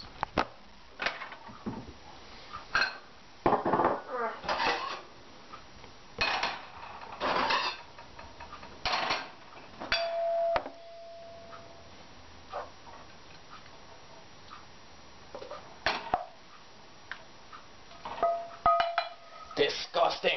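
Clinks and clatters of plates, a frying pan and cutlery as cooked eggs are dished onto plates, in irregular bursts. A short ringing tone sounds about halfway through and again near the end.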